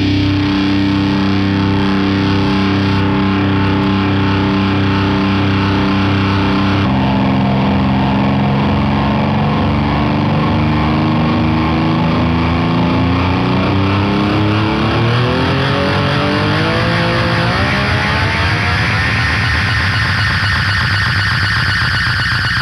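Distorted electric guitar played through effects pedals in a live stoner-psychedelic rock set: held droning notes over a pulsing low end. From about a third of the way in, a tone slides upward in pitch, stepping higher toward the end, to a high sustained tone.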